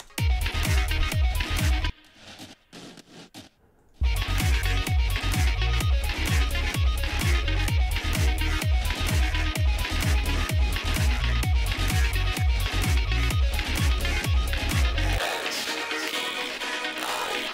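Electronic dance track playing back with a heavy sub-bass and a steady beat. It cuts to a near-silent break about two seconds in and comes back in full about two seconds later. The sub-bass drops out near the end.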